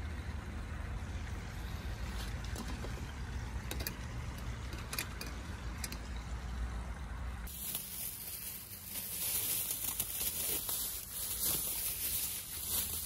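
A pot of noodles boiling on a camp stove, with a steady low rumble and light crackle. About seven seconds in, the sound changes abruptly to a hissing splash of water as the noodles are drained through a stainless mesh strainer.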